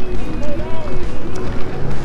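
Wind buffeting the microphone of a handheld camera, a loud uneven low rumble, with faint voices talking behind it.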